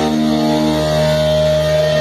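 Live hardcore punk band's distorted electric guitars letting one chord ring out, steady and sustained, with no drumming.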